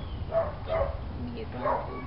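Three short, high, dog-like yips.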